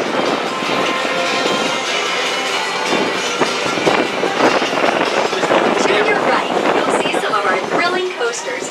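Monorail car running along its elevated track just after pulling out of the station: a steady, loud running noise of the car's wheels and drive, with irregular clatter on top.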